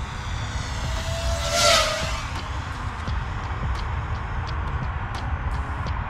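Diatone Roma F5 V2 five-inch FPV quadcopter flying past: a high-pitched whine of motors and propellers, loudest as it passes close about a second and a half in, then easing off.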